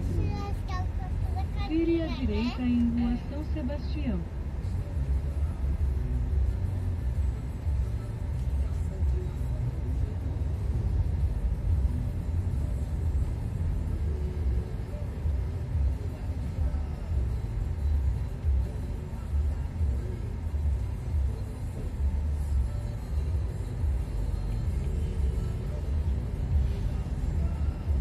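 Steady low road and engine rumble inside a moving car's cabin, with a voice heard over it for the first few seconds.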